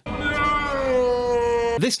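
Film clip of Darth Vader's long drawn-out shout of "Nooo": one held cry that sinks slightly in pitch, over a low rumble.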